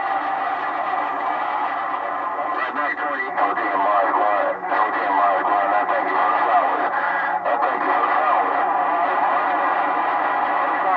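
Received CB traffic on channel 6 (27.025 MHz) from a President HR2510 radio's speaker: strong signals of garbled, overlapping voices with steady heterodyne whistles and static.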